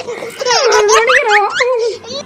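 High-pitched laughter, starting about half a second in and stopping just before the end.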